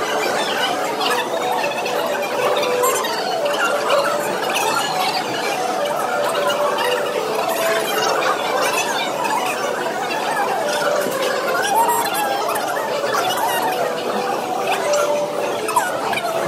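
High, squeaky chattering voices that overlap continuously without clear words, sounding like sped-up speech.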